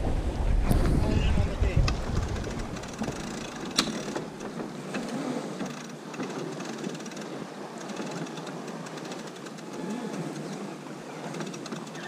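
Wind buffeting the microphone on a sailing yacht for about the first three seconds, then a steadier rush of wind and water. Faint, indistinct crew voices and a few sharp clicks from deck gear run under it.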